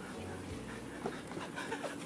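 A man panting in short, faint breaths, out of breath from hurrying.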